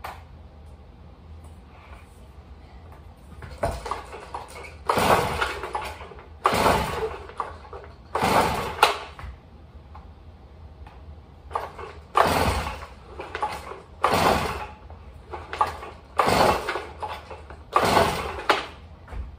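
Recoil starter of a Stihl cutoff saw being pulled again and again, about ten rasping pulls in two runs with a short pause between, the two-stroke engine not catching between them.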